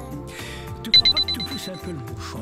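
A rapid run of high electronic beeps, about eight in a second, from a computer alert tone, starting about a second in and lasting about a second, over background music.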